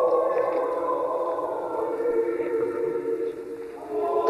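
Voices singing a slow church chant in long held notes, fading a little near the end.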